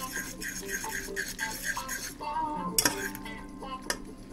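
A metal fork scraping and clinking against a stainless steel pot while thick noodles are tossed in sauce, with a sharp clink about three seconds in and another near the end. Light background music plays underneath.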